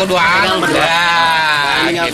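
A voice drawing out the word "salam" in one long held note, its pitch wavering up and down, part of a repeated "salam, salam" chant.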